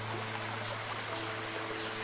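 Waterfall rushing steadily, with soft background music of long held low notes beneath it.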